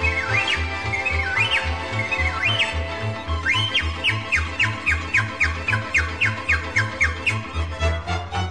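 Music: a pan flute playing quick sweeping runs up and down, then a fast string of repeated notes, over a steady bass beat.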